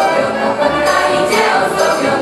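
Mixed choir of a Polish folk song-and-dance ensemble singing a Polish Christmas carol, many voices holding sustained chords.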